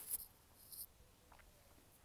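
Handling noise close to the microphone: two brief scratchy rustles about half a second apart, the first the louder, as a hand reaches for and touches the recording phone, followed by faint room hiss.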